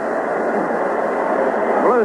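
Steady crowd murmur in a hockey arena, heard through an old broadcast recording that sounds muffled and narrow, with nothing above the upper midrange.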